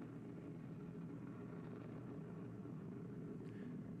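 Steady low rumble of an Ariane 5 rocket climbing after liftoff, heard from a distance in launch footage played through a hall's loudspeakers.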